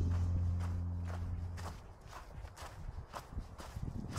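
Background music fading out over the first couple of seconds, then footsteps on a thinly snow-covered woodland path, about two steps a second.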